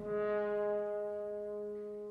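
Orchestral brass holding a sustained chord that slowly fades.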